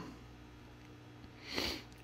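A man sniffs once, briefly, through the nose about a second and a half in, over a faint steady hum.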